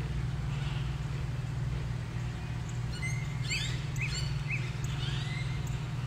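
A bird calling in a series of short chirps, about two a second, starting about halfway through, over a steady low hum.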